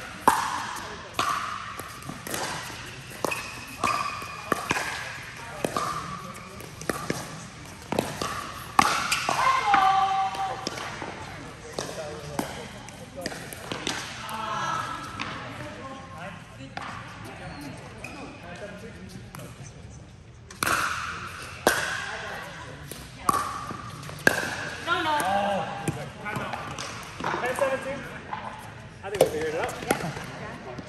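Pickleball rallies: paddles hitting a hard plastic pickleball with sharp pops about once a second, echoing in a large indoor hall. The hits stop about eight seconds in and start again after about twenty seconds.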